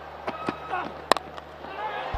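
Cricket bat striking the ball once, a single sharp crack about a second in, from a lofted shot that goes for six. A steady low hum runs underneath.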